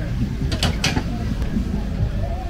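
Hand-lever potato chipper being worked: its mechanism creaks, with a few sharp clacks a little over halfway through as the potato is pressed through the blades.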